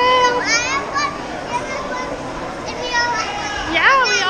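A young child's high voice, with a held note near the start and quick rising glides at about half a second and again near the end, over steady background crowd chatter.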